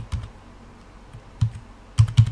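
Computer keyboard keystrokes: a few quick key presses at the start, a pause of about a second, then more key presses near the end.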